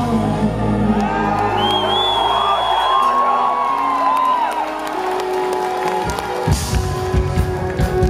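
Rock band playing live in a hall, heard from within the audience: electric guitars and keyboard hold sustained chords while the bass and drums drop back for a few seconds, then the full band with drums comes back in about six seconds in. Audience members whoop over the music.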